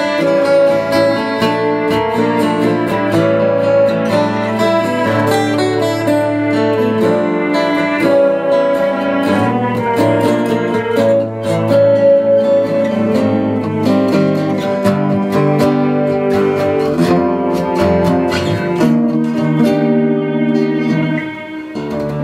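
Live instrumental passage on acoustic guitars with a keyboard holding sustained notes underneath, dipping in level about a second before the end.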